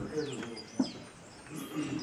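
Birds calling in short downward-sweeping chirps over quiet murmured human voices, with one sharp click a little under a second in.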